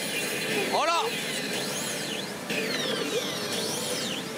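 Pachinko parlour din with electronic sound effects from a Sammy Souten no Ken pachinko machine during a reach: a short warbling voice-like call about a second in, then sweeping high tones that rise and fall and long falling glides.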